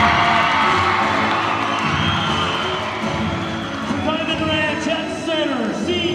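Loud music playing over the gym's PA, with a crowd cheering and whooping along.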